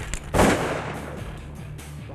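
A single shotgun shot about half a second in, its report trailing off, over low background music.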